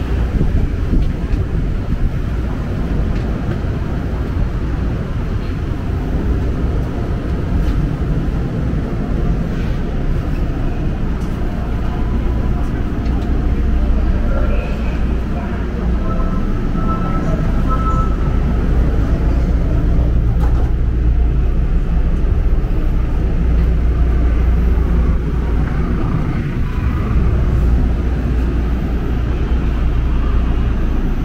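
Running noise of a Daegu Line 3 monorail train in motion, heard from inside the car: a steady low rumble of the rubber-tyred cars on the concrete guideway, a little louder through the middle.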